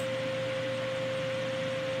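Steady background hiss with a faint, constant high hum: room tone with no distinct event.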